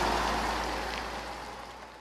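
Steady background noise, with no distinct events, fading out gradually toward the end of the video.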